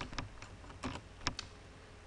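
A handful of separate sharp clicks from computer keys or mouse buttons, spaced irregularly.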